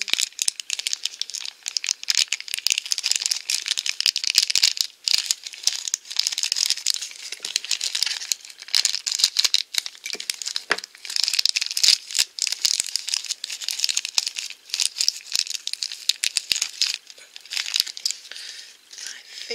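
A crinkly plastic blind bag being squeezed and pulled open in the fingers: a steady stream of crinkling and crackling dotted with small clicks, with a few brief lulls.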